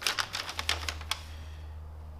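A sheet of paper letter being pulled out and unfolded by hand, giving a quick run of crisp crackles in the first second that then stops. A steady low hum runs underneath.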